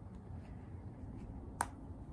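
A single sharp wooden click about one and a half seconds in: a croquet mallet striking a ball on the lawn.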